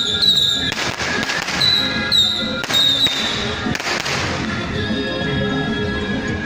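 Traditional temple percussion music: cymbal crashes about once a second, with short high wavering notes over them. About four seconds in, it gives way to a steadier held melody.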